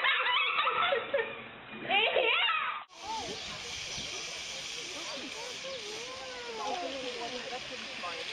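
Excited voices and laughter of onlookers, then, from about three seconds in, a steady hiss with faint distant voices under it.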